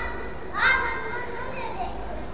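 A young child's high-pitched shout about half a second in, trailing off over the following second.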